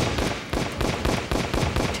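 A rapid volley of gunshots, about six or seven shots a second, each a sharp crack.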